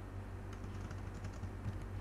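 Typing on a computer keyboard: a scatter of faint, irregular key clicks.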